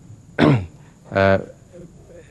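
A man clearing his throat twice in quick succession: a short rough rasp, then a brief voiced 'ahem'.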